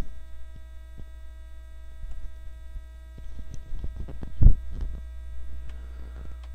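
Steady low electrical mains hum on a poor-quality recording, with faint scattered clicks and one louder low thump about four and a half seconds in.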